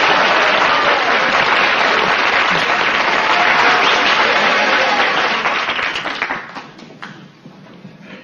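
A crowd applauding loudly, the clapping dying away about six to seven seconds in.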